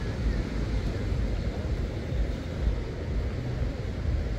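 Wind buffeting the microphone in uneven low gusts, over a steady outdoor hiss.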